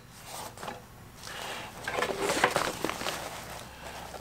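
Nylon fabric of a haversack rustling and rubbing as it is handled and opened by hand, with a few small clicks; the rustling grows louder for about a second in the middle.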